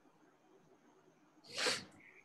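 Faint room tone, then one short, breathy burst from a person about one and a half seconds in, heard over a video call.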